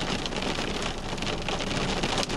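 Heavy rain drumming on a car's windshield and body, heard from inside the car as a dense, steady patter of drops.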